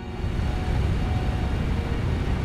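Waterfall plunging into a pool: a steady, low rushing noise of falling water.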